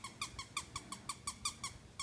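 Squeaky plush dog toy squeezed rapidly over and over, giving a fast run of short squeaks, each dropping slightly in pitch, about seven a second.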